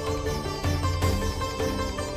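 Background score music: sustained tones over a heavy, repeated low pulse.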